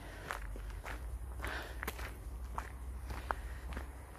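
Footsteps of a person walking at a steady pace, a footfall about every two-thirds of a second, with a short high note about three-quarters of the way through.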